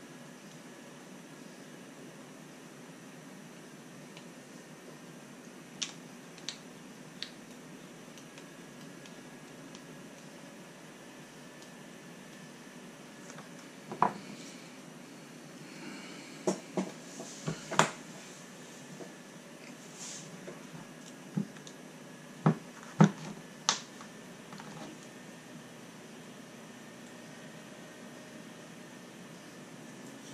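Small plastic and metal RC rock-crawler axle parts clicking and tapping as they are handled and fitted by hand: a few light clicks, then a busier run of sharper clicks and knocks about halfway through, over a faint steady room hum.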